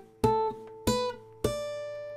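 Steel-string acoustic guitar notes tapped onto the fretboard with the picking hand, the other strings muted: three single notes climbing A, B, then D, about two thirds of a second apart, the top note left to ring.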